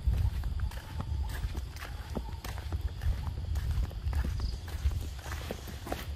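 Footsteps on a dirt path, a loose series of short knocks and scuffs, over a steady low rumble on the microphone.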